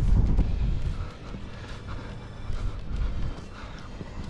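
Wind rumbling on the microphone, loudest in the first second and easing after, with a few faint knocks of handling.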